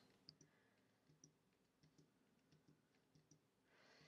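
Near silence with a few faint computer clicks, keys or mouse pressed as table rows are added.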